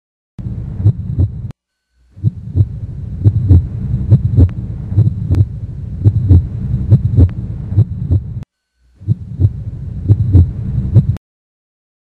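Low heartbeat-like thumping, often in pairs about once a second, over a low hum. It cuts out twice briefly and stops about a second before the end.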